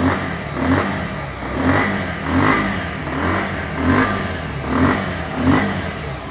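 Bajaj Pulsar 150's single-cylinder air-cooled engine idling, heard close to the engine and exhaust. The sound swells slightly and evenly about every 0.8 seconds.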